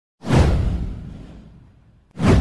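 Swoosh sound effect with a deep low rumble under it, starting suddenly about a quarter second in, falling in pitch and fading out over about a second and a half.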